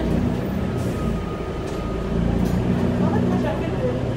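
Cabin sound of a 2012 New Flyer C40LF CNG city bus under way: its natural-gas engine and drivetrain give a steady low drone, which grows stronger about two seconds in.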